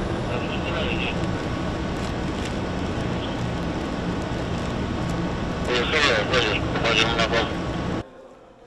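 Steady outdoor background noise with people's voices talking briefly near the end; it cuts off suddenly.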